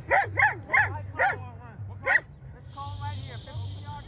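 A dog barking close by: five short, sharp barks in quick succession over about two seconds.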